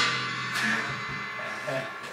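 Drum-kit cymbals ringing out and slowly fading after a loud crash hit, with a low drum resonance underneath.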